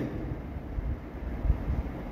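Low steady background rumble, with a soft low thump about one and a half seconds in.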